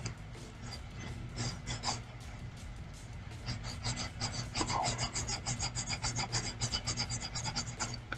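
Stylus rubbing back and forth on a graphics tablet in quick scratchy strokes, a few at first and then a dense run of about five or six a second from about halfway through, over a steady low electrical hum.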